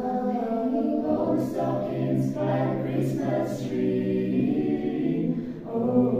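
A five-voice a cappella group singing a Christmas song in harmony, holding long chords.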